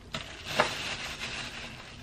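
Soft rustling handling noise of a pack of pecans being brought out and opened, with a light knock about half a second in.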